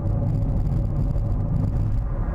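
Steady low road and engine rumble inside a car's cabin while driving.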